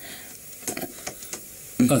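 Faint rustling and a few light knocks of a person on wooden crutches being helped down onto a sofa, with a short spoken word near the end.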